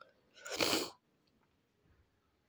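A single short, breathy burst from a person, about half a second long, a little under a second in.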